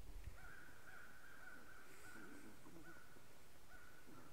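Canada geese calling faintly: a long run of wavering calls, then a shorter run starting near the end.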